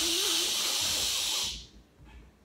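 A woman making a long, steady "shhh" shushing sound, an ASMR trigger, louder than her talking; it cuts off about one and a half seconds in.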